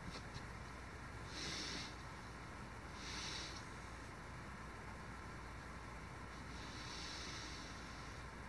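Faint, quiet room hiss with three short, soft hissing breaths close to the microphone, about a second and a half, three seconds and seven seconds in.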